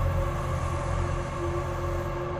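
Low, steady, eerie drone of a dark ambient film score: a deep rumble with a few faint held tones above it.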